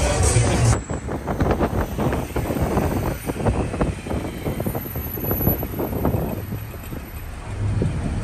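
Loud music with a heavy bass beat cuts off abruptly just under a second in, giving way to night-time city road traffic noise broken by many short, irregular crackles.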